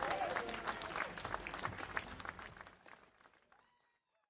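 Audience applauding, irregular hand claps that die away to nothing about three and a half seconds in.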